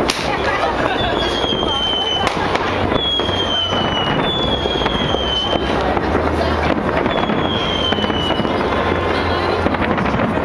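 New Year fireworks going off: dense crackling and repeated bangs, with a sharp bang right at the start and more about two and four seconds in. Four whistling rockets sound one after another, each a high whistle lasting about a second and falling slightly in pitch.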